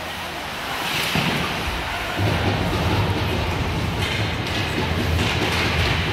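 Indoor ice rink during a hockey game: a steady low rumble that grows louder about two seconds in, with bursts of hiss from skates scraping the ice.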